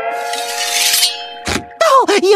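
Cartoon sound effects: a held musical twang tone runs under a clattering crash of falling objects in the first second, then a single thud about a second and a half in.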